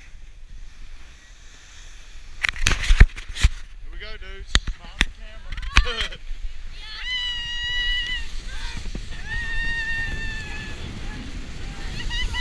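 Snow tubes sliding down a packed snow lane, a steady rushing scrape that builds from about seven seconds in, under three long, high-pitched yells from the riders, each about a second. Before the slide starts there are a few sharp knocks and a short burst of voices.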